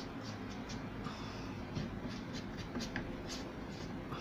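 A paintbrush dry brushing paint onto a painted frame in quick, light, scratchy strokes, a few a second, over the steady noise of electric fans.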